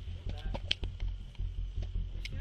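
Handheld phone recording outdoors: a steady low rumble of wind and handling on the microphone, with scattered clicks and crackles and brief faint voices about half a second in.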